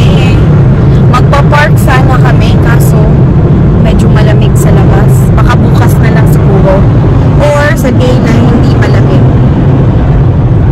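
Steady low road and engine noise inside the cabin of a moving car, with a person's voice talking over it.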